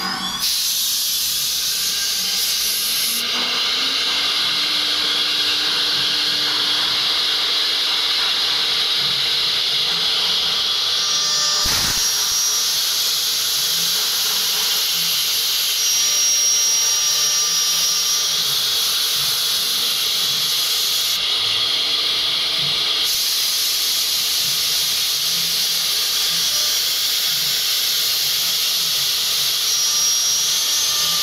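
Three-spindle STM1325-3T CNC router spindle running at speed and routing a groove profile into a wooden cabinet door panel: a loud, steady cutting hiss with a thin high whine. There is one short knock near the middle.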